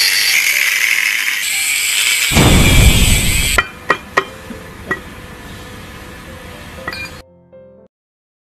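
A power tool cutting into the metal body of an electromagnetic flowmeter: a loud, high screech with a heavy low rumble added for about a second before it stops about three and a half seconds in. Then come several sharp metallic clinks.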